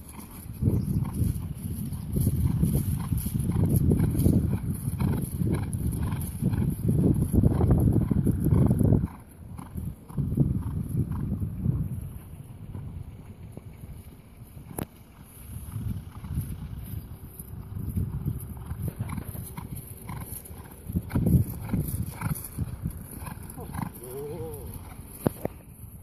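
Hoofbeats of a Polish Arabian horse cantering on grass under a rider, a run of repeated knocks over low rumbling. The sound is loud for about nine seconds, drops off suddenly, then goes on more quietly.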